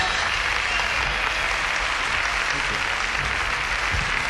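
Large concert audience applauding steadily in a hall, just after a live rock and roll number has ended.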